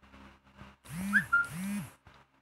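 A phone's WhatsApp message notification chirps about a second in, over two low tones that each rise and fall in pitch for about half a second. Before it come a few faint taps of typing digits on the phone's keypad.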